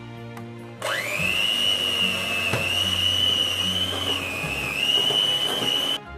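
Electric hand mixer switched on about a second in, its motor spinning up to a steady high whine as the beaters cream ghee and powdered sugar in a glass bowl. The pitch dips briefly, then holds until the mixer cuts off at the end. Soft background music plays before it starts.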